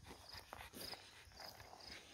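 Near silence: faint cricket chirps, short high pulses about twice a second, with a few faint scuffs.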